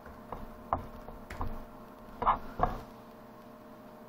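About five light, irregular taps and clicks on a laptop keyboard as a login is typed on a Lenovo Yoga 2 Pro, over a faint steady hum.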